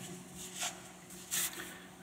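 Neoprene lens cover being handled and pulled into place on a telephoto lens: two brief soft rustles of fabric rubbing against the lens and hands, the second one higher and hissier, about a second and a half in.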